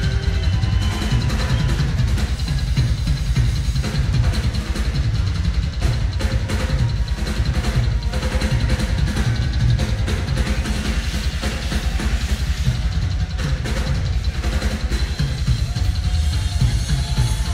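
Live rock drum kit solo in a concert hall: rapid, continuous bass drum beats under drum and cymbal hits.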